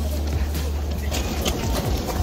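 Wind buffeting a handheld phone's microphone as a steady low rumble while walking outdoors, with scattered light clicks of footsteps.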